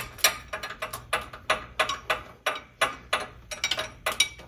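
A run of short, sharp clicks, about three a second, from the metal fill fitting being worked off the ORI strut's Schrader valve after the nitrogen charge.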